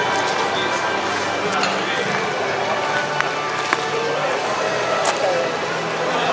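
Busy exhibition-hall din: indistinct crowd chatter with music playing in the background, steady throughout, with a couple of faint clicks midway.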